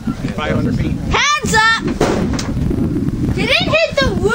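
Steady wind rumbling on the microphone, with people talking in the background twice.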